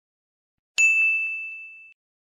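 A single ding sound effect: one clear, high, bell-like tone that strikes about a second in and rings down over about a second before cutting off.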